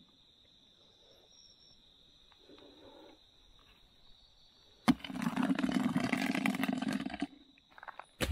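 Steady high trill of crickets at night over faint rustling. About five seconds in, a sudden loud, rough sound breaks in, lasts about two seconds and cuts off.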